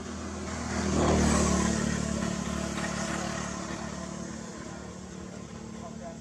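A motor vehicle's engine running as it passes by: it swells to its loudest about a second in, then slowly fades away.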